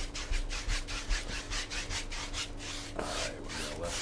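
A two-and-a-half-inch brush scrubbing oil paint back and forth across a stretched canvas: a fast, even rasp of bristles, several strokes a second.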